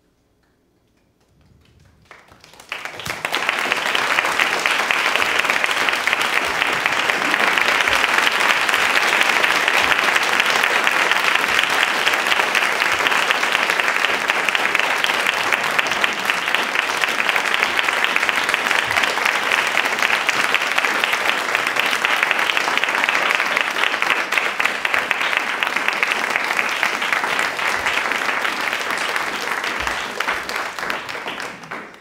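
Theatre audience applauding: the clapping starts about two seconds in, swells within a second to a full, steady round, and keeps up at that level.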